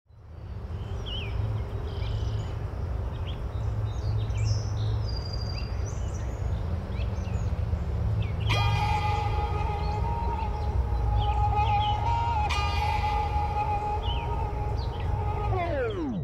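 Outdoor ambience fades in: birds chirping over a low steady rumble. About halfway through, a held music chord enters and sustains, then slides steeply down in pitch just before the end, like a tape stop, leading into the song.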